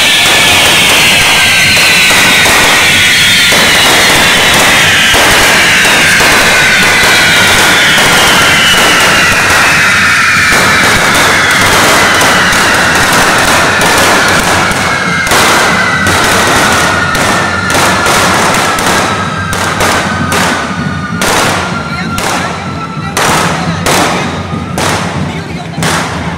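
Massed correfoc fireworks: a dense shower of spark-throwing fountains hissing loudly, with several whistles that slowly fall in pitch. From about halfway in, a rapid, uneven string of sharp firecracker bangs takes over as the hiss fades.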